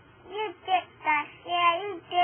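A young girl's voice singing a few short, sing-song notes, four in all, with the pitch sliding up and down, the last one held longest.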